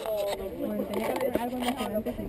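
Several people talking at once in indistinct, overlapping chatter, with no single voice standing out.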